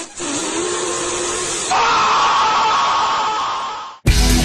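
A steady, noisy edited-in sound effect with a faint hum in it. About two seconds in it switches abruptly to a louder, brighter rushing sound, then fades out near the end.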